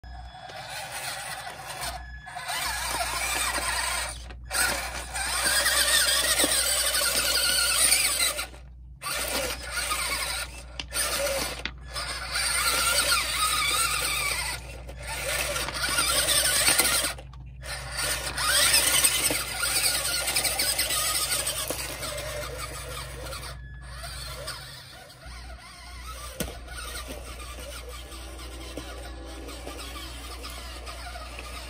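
Radio Shack 4X4 Off Roader RC truck's small electric motor and gearbox whining in bursts as it is driven over river rocks, with its tyres scrabbling on the stones. The whine rises and falls with the throttle and cuts out briefly several times. It grows fainter in the last third as the truck moves away.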